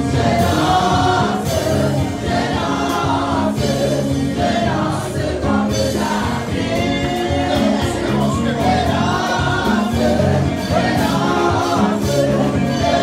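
Gospel music: a choir singing over instrumental backing with a steady beat.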